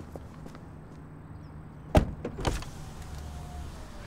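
A car door shutting with one sharp, loud thud about halfway through, followed by a short rustle of the seatbelt being pulled out.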